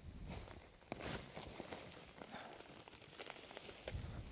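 Faint rustling of oat stalks and tearing of roots as a clump of oats and vetch is pulled up by hand out of dry soil, with one brief louder rustle about a second in.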